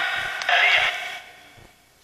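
Necrophonic ghost-box app playing through a phone speaker: garbled, radio-like snatches of sound with reverb added. One burst ends at the start, a second comes about half a second in, and it trails off in a long reverb fade.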